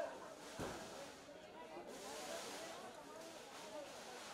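Indistinct voices of a crowd talking over one another, no single clear speaker, with a brief low thump about half a second in.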